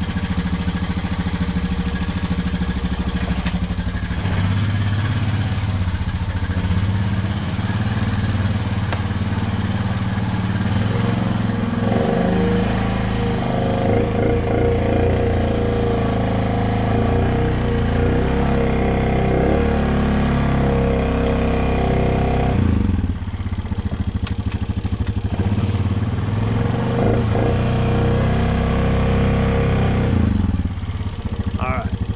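Honda Rubicon TRX500 ATV's single-cylinder four-stroke engine running just after a cold start, with its engine speed changing a few times as the quad is backed out and driven off slowly. The note steps up about twelve seconds in and dips briefly just past the twenty-second mark.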